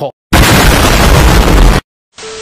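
A very loud, distorted explosion-like sound effect: a wall of noise, heaviest in the low end, that starts suddenly a fraction of a second in, holds for about a second and a half and cuts off abruptly.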